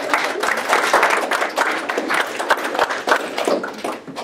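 A small audience clapping: dense, steady applause that dies away at the end.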